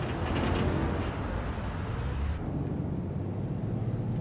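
Police patrol car driving, a steady rumble of engine and tyre noise; about two and a half seconds in it turns duller, with less hiss on top.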